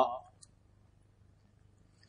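A man's voice trails off at the very start, then near silence: faint room tone with a low steady hum and a couple of tiny ticks.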